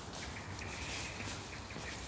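Quiet outdoor background noise with a faint, steady high-pitched tone through most of it.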